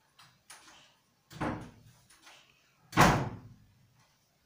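Two sudden thuds about a second and a half apart, the second louder and briefly ringing, with a few faint ticks before them.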